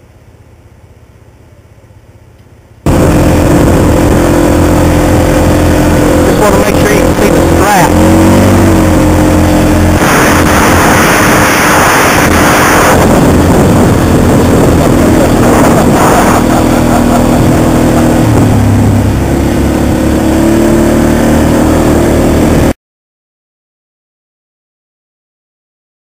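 ATV engine running loud and very close while being ridden, its pitch rising and falling with the throttle, with a noisier stretch in the middle. It starts suddenly about three seconds in, after a few seconds of low background sound, and cuts off abruptly shortly before the end.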